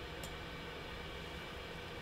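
Quiet room tone: a steady low hum and faint hiss, with one faint click shortly after the start.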